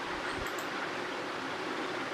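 Steady background hiss of room noise with no speech; a faint low bump about half a second in.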